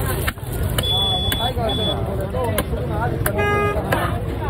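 Busy fish-market din: background chatter and a low rumble of traffic, with a few sharp knocks of a large knife on a wooden chopping block as a tuna is cut. A horn sounds briefly a little before the end.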